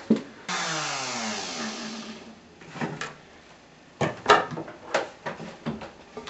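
Trim router motor winding down, its whine falling steadily in pitch over about two seconds until it fades. After it come several short knocks and clicks of wood being handled.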